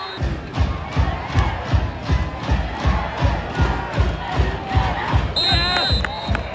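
Bass drum beating steadily, about three hits a second, over crowd noise at a football game, as from a band's drumline in the stands. A shrill whistle sounds near the end.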